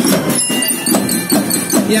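School marching drum band playing: snare and tenor drums beat a steady rhythm under a sustained melody line, likely from bell lyres.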